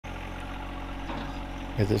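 John Deere 1025R compact tractor's three-cylinder diesel engine running steadily while the front loader raises its bucket.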